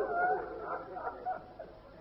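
Faint weeping and wailing of mourners, several wavering, overlapping cries that die away over the two seconds.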